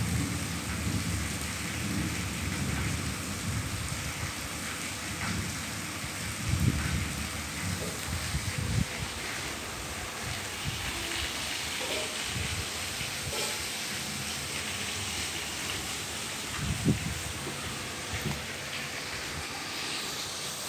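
Low rumbling and rustling handling noise from a phone being moved about, in irregular bursts over a steady background hiss.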